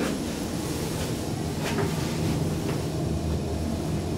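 2006 KONE MonoSpace machine-room-less traction elevator travelling down: a steady low hum and rumble of the ride heard inside the cab, with a few faint ticks.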